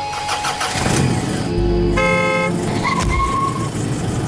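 Car sounds with a single car horn blast of about half a second, about two seconds in. It is followed by a sharp knock and a short, high steady tone.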